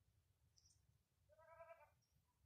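A faint, short kitten mew about a second and a half in, high-pitched and lasting about half a second; otherwise near silence.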